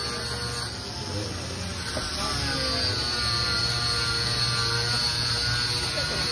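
A steady low engine drone, with faint voices.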